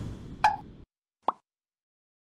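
Logo-animation sound effects: a whoosh dying away, a short pop about half a second in, and a single brief click a little over a second in.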